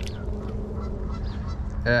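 A man's short laugh near the end, over a steady low rumble of wind on the microphone.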